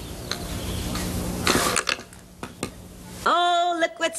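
Homemade cardboard spinner with a pencil stub for an axle spinning on a tabletop: a steady rattling whir for about a second and a half, then a few clicks and clatters as it slows and tips onto one corner. A voice exclaims near the end.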